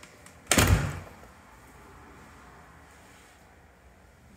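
A door shutting with a single loud thud about half a second in.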